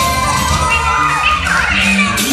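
Children shouting and cheering over loud Bollywood dance-remix music with a steady beat. The shouts pile up between one and two seconds in.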